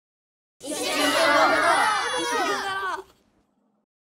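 Many children's voices shouting together at once, overlapping, starting about half a second in and cutting off sharply after about two and a half seconds.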